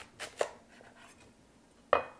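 A sharp knife cutting through a raw cauliflower head on a wooden cutting board: two short cutting sounds in the first half second, then a sharp knock against the board just before the end.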